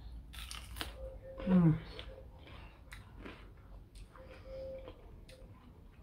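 Crisp bite into a slice of raw, thick-walled red bell pepper, then chewing with faint crunching. About a second and a half in, a short voiced hum falling in pitch is the loudest sound.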